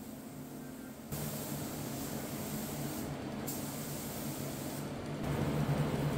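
Air spray gun spraying thinned primer: a steady hiss that starts about a second in, pauses briefly about halfway, then stops shortly before the end.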